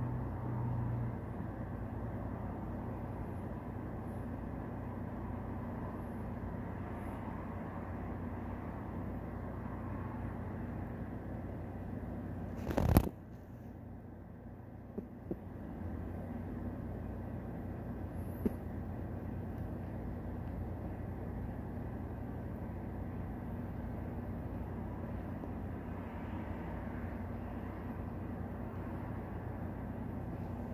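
Steady low background hum and rumble. One sharp knock comes about thirteen seconds in, followed by a couple of faint clicks.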